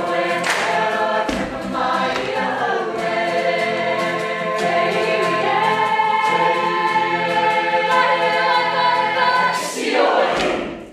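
A group of voices singing a song together in unison, with held and gliding notes.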